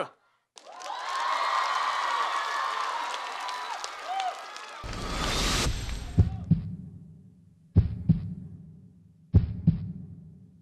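A studio audience cheers and screams for about four seconds. Then a whooshing electronic riser leads into a few deep booming bass hits that ring out slowly, spaced a second or more apart: the sparse opening of an electronic dance track.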